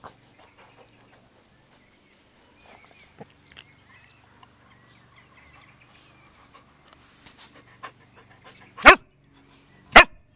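Welsh springer spaniel panting faintly close to the microphone, then barking loudly twice near the end, about a second apart.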